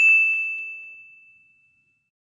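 A single bright electronic ding, the chime of a channel logo sting. It rings on one clear high tone and fades away over about a second and a half.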